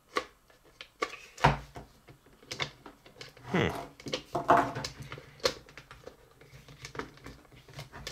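Hard plastic pieces of a Hasbro Potato Head toy clicking, knocking and rubbing as they are pushed and lined up onto the body's peg holes. A few sharp clicks stand out: the loudest comes about a second and a half in, and another near the middle.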